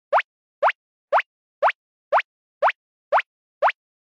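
Cartoon sound effect: a short, quickly rising 'bloop', repeated eight times at a steady two per second.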